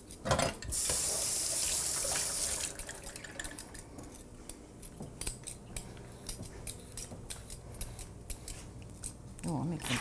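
A rush of running water for about two seconds, then a metal vegetable peeler scraping strips of skin off a cucumber in a string of short strokes.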